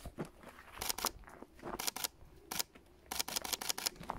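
Camera shutter firing several times, a handful of short sharp clicks at uneven intervals.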